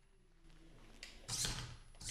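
An FTC robot's servo-driven claw arm swinging on its mount: a faint whir, then a brief mechanical clatter about one and a half seconds in.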